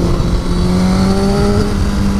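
Sport bike engine holding a steady drone at highway speed, with a fainter overtone rising slightly before fading, over wind rushing on the rider's microphone.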